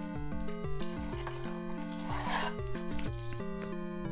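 Trading cards rubbing and sliding against each other as they are handled, in short rustles, the loudest just over two seconds in, over 8-bit lo-fi background music.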